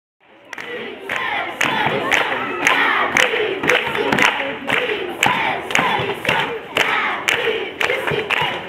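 A crowd of children shouting and chanting together over a sharp, regular beat about twice a second. It fades in at the start.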